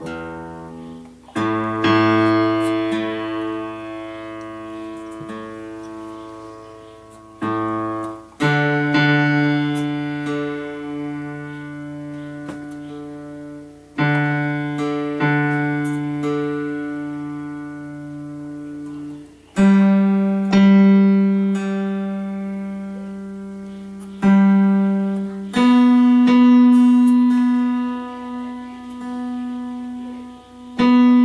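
Acoustic guitar strings plucked one note at a time and left to ring, a new note every few seconds, stepping up in pitch from the low strings to the higher ones, as the guitar's tuning is checked.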